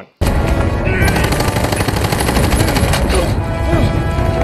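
Film soundtrack of a jungle chase scene: loud, dense action music and effects with rapid repeated sharp hits, starting suddenly.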